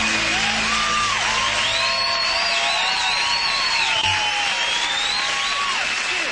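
Studio audience applauding and cheering, with whoops and whistles, as the last chord of the song dies away in the first half-second.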